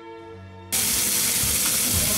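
Soft background music, then from just under a second in a sudden loud, steady sizzling hiss of food frying on a stove.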